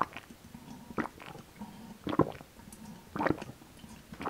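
Close-miked gulping as a person swallows tomato juice straight from a large glass jar. There are four big swallows at a steady pace of about one a second.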